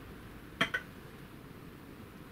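An assembled RC crawler axle set down on a digital kitchen scale: two quick, sharp clacks close together, about half a second in.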